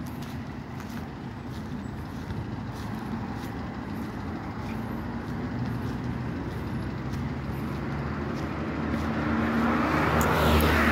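Road traffic on a multi-lane city road: a steady hum of motor vehicles, with an approaching vehicle's engine growing louder over the last few seconds.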